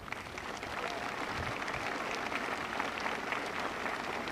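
A large crowd applauding, swelling over the first second and then holding steady.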